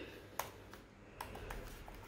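A few faint, separate clicks over quiet room tone.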